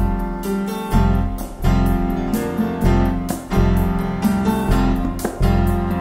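Live band music led by piano: an instrumental passage of a worship song, with sustained piano chords, a deep bass line and regular percussion strikes.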